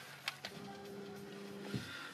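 Two quick clicks of the dashboard radio buttons being pressed. Then faint music from the truck's stereo with its volume turned nearly all the way down, a steady held tone lasting about a second.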